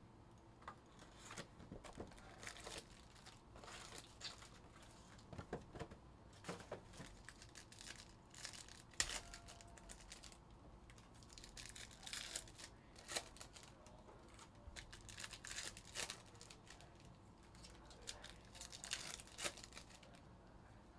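Foil trading-card packs (2022 Panini Prizm Baseball hobby packs) being torn open and their wrappers crinkled, in quiet, irregular bursts of crackling with a sharper crack about nine seconds in.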